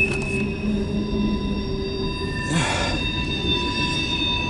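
CSX mixed freight cars rolling past with a steady wheel squeal from the curve of the wye, over the rumble of the train. A brief rush of noise comes about two and a half seconds in.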